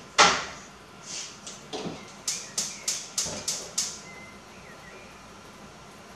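Kitchen clatter at the stove: one loud metal clank with a short ring, then two softer knocks and a quick run of six sharp light taps about a third of a second apart.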